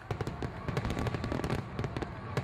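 Fireworks going off: a dense run of sharp crackles and pops in quick succession.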